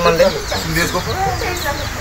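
A chicken clucking softly a few times in the background, just after a man's voice stops.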